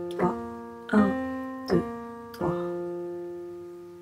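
Piano playing a slow left-hand B-flat major arpeggio in octaves: four single notes about three-quarters of a second apart, the last one left ringing and fading.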